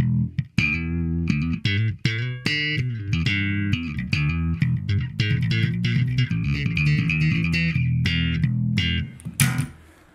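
Ibanez SR300M electric bass with roundwound strings cleaned by an alcohol soak, played as a quick run of plucked notes that stops about a second before the end. The strings sound definitely not as dead as they used to be, but not as good as they could be.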